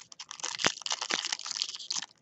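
Foil wrapper of a baseball card pack crinkling as hands pull it open and work it: a dense run of fast crackles with a few sharper snaps.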